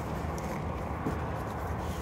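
A motor running steadily at a low pitch in the background, with a couple of faint taps about half a second and a second in.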